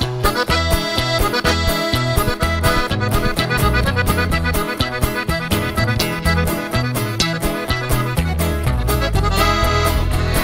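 Live norteño band playing an instrumental break: quick accordion runs over a steady bass and drum beat, right after a sung line ends.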